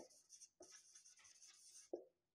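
Marker pen writing on a whiteboard: a faint, high hiss of the tip moving across the board in short strokes.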